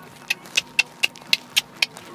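A quick series of seven sharp clicks, about four a second, alternating slightly louder and softer.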